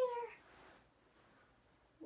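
A voice drawing out the end of a word for about a third of a second, its pitch sliding slightly down, then near silence: room tone.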